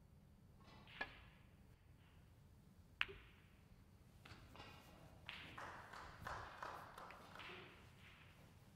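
Snooker balls clicking: a light tap about a second in and a sharp, louder ball-on-ball click about two seconds later. These are followed by a few seconds of softer, irregular sound.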